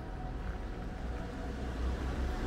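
A car passing on the street, its low engine and tyre rumble getting louder toward the end, over general street noise.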